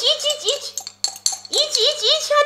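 Metal spoons clinking and scraping against small food cups as the last mouthfuls are scooped out, with wordless excited vocalising over it.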